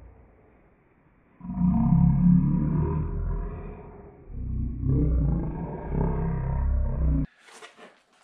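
A man's voice played back slowed down and pitched far lower, so it comes out as a deep, drawn-out growl with no words that can be made out. It comes in two stretches, from about a second and a half in until just past seven seconds, with a brief dip in the middle.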